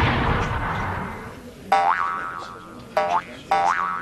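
An animated explosion's blast fading away, then three short pitched sound effects, each jumping quickly up in pitch and dying away, about a second into the second half and twice more near the end.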